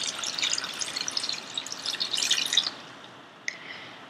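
Water poured from a pitcher splashing onto sliced oranges in a stainless steel pot, stopping about two-thirds of the way through; a faint click near the end.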